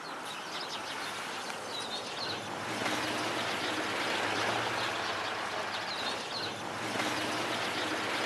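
Outdoor street ambience: a steady wash of background noise that grows slightly louder, with a bird chirping briefly twice.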